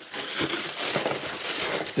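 Thin plastic bags and plastic packing wrap crinkling and rustling without a break as hands dig a wrapped part out of a cardboard box.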